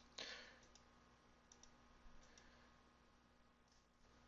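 Near silence with a few faint computer mouse clicks, the first just after the start and others around the middle, as points are placed on screen.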